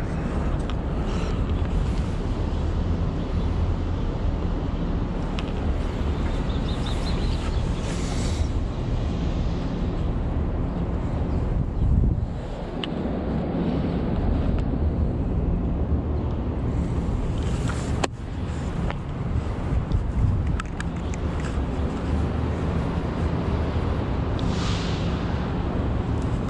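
Outdoor street noise: wind rushing on the microphone over a steady rumble of road traffic, with one sharp click about two thirds of the way through.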